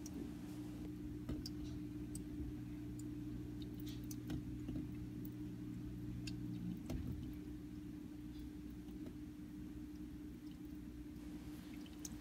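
Steady low electrical hum of aquarium equipment running, with a few faint scattered clicks.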